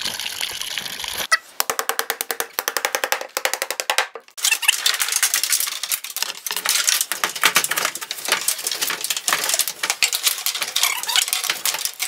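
Water rushing from an artesian wellhead for about the first second, cut off abruptly by fast percussive music: rapid even clicks for a few seconds, then a busier, denser beat.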